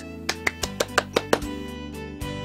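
A person clapping: about seven quick hand claps in the first second and a half, over soft background music with held notes.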